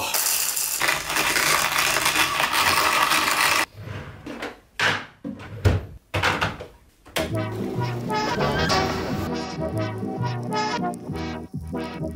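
Dry rattling hiss of coffee beans in a hand coffee grinder for the first few seconds, then a few sharp clicks and knocks as an electric kettle is handled on its base. Background music with a beat takes over about seven seconds in.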